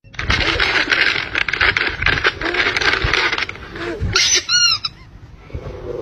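Plastic treat pouch crinkling and rustling as it is handled, with fine crackles throughout. About four seconds in come a few short, high-pitched squeaky calls.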